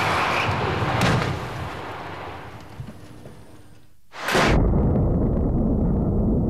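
Crash-test car impact: rushing noise ending in a sharp bang about a second in, then dying away. A sudden, loud burst of noise starts just past four seconds and keeps on.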